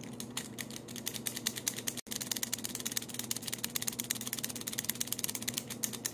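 Plastic toy figure's ratchet mechanism being worked by hand: rapid, even clicking, about ten clicks a second, with a brief break about two seconds in.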